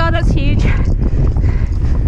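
Horse galloping on turf, heard from the rider's helmet-mounted camera: hoofbeats under a steady low rumble of wind on the microphone. A short, wavering voice is heard in the first half second.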